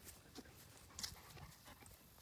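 Near silence outdoors, with a few faint soft clicks and rustles.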